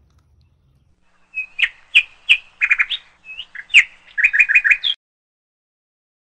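A songbird singing close by: a string of sharp chirps, then a quick run of about five repeated notes near the end, after which it stops abruptly.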